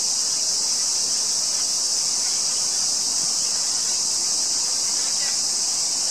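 A dense insect chorus, a steady high-pitched shrill that runs on without a break.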